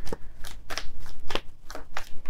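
A deck of tarot cards shuffled by hand, giving a run of quick, irregular card snaps and flicks.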